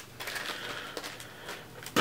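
Empty plastic wax-melt packaging rustling and crinkling quietly as it is handled.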